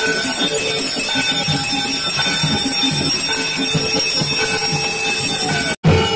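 Temple bells ringing continuously over a steady, rapid drum beat, the music of a Hindu aarti. The sound drops out for a moment just before the end.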